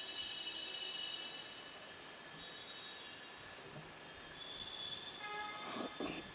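Faint, steady high-pitched squealing tones that fade after about a second and come back near the end, over a low background noise.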